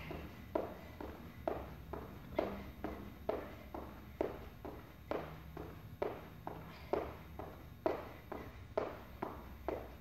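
Feet landing rhythmically on a rubber gym floor during jumping jacks, a short thud about twice a second, steady throughout.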